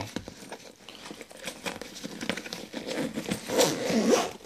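Nylon backpack being handled: fabric rustling and crinkling with small scattered clicks from its zipper pulls and buckles, a little louder near the end.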